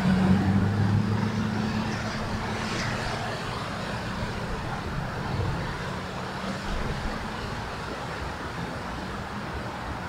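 Wind rumbling and buffeting on the microphone, with a steady low hum underneath that is strongest in the first few seconds and then fades.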